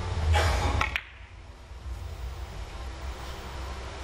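A three-cushion billiards shot on a carom table: a short whoosh, then two sharp clicks just under a second in as the cue and balls strike. Then a quiet low hum while the balls roll.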